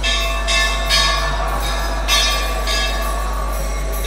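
Kirtan accompaniment between chanted lines: metal hand cymbals (kartals) ringing in a steady beat about twice a second over a sustained, held chord, with a constant low hum underneath.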